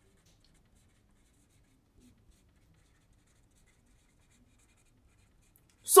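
Felt-tip marker writing on a whiteboard: faint, scratchy strokes.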